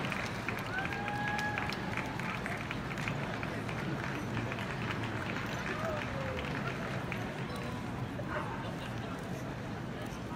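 Steady arena crowd noise from a dog show broadcast, a hum of many voices with scattered faint clicks, heard through a TV speaker.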